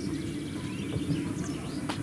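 Outdoor ambience: a low background murmur with a few faint bird chirps, and one sharp click near the end.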